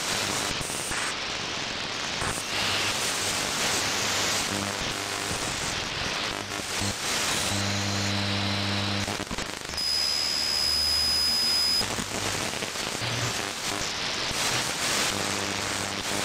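Shortwave radio audio from an RTL2832 SDR behind a Ham It Up upconverter, AM-demodulated while being tuned across the 7–8.5 MHz band. It is mostly static hiss that changes abruptly as the frequency moves, with brief snatches of a station's audio and a steady high whistle lasting about two seconds, starting around ten seconds in.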